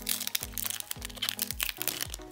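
Foil wrapper of a Pokémon booster pack crinkling and crackling as it is pulled open by hand, heard over background music with a steady low beat.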